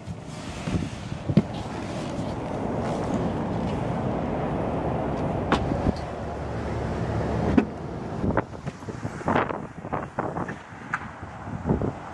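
Wind rushing over the microphone for the first seven or eight seconds, broken by a few sharp clicks and knocks from the car's door and tailgate being handled; after that, quieter handling noise with several more short clicks.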